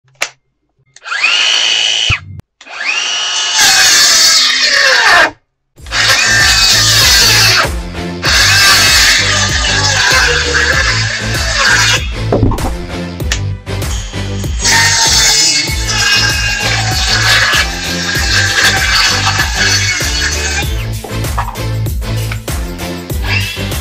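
DeWalt 12V MAX brushless compact circular saw revving briefly twice about a second apart, then running and cutting through a board. From about six seconds in, background music with a steady beat plays over the saw.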